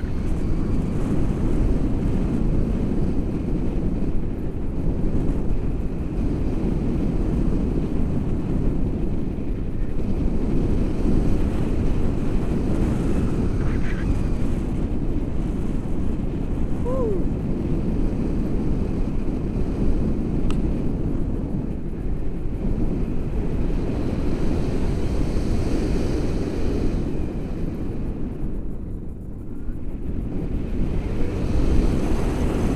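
Airflow buffeting the camera microphone during a tandem paraglider flight: a steady, loud, low rushing of wind.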